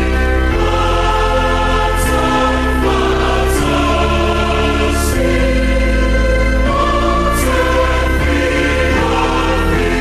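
A choir singing a hymn over a low, steady accompaniment, with long held chords that change every second or two.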